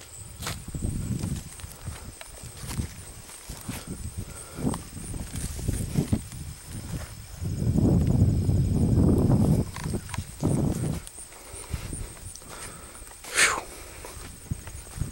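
Footsteps and rustling through a dense stand of leafy crops, with low rumbling handling or wind noise on the camera microphone, heaviest for about two seconds past the middle.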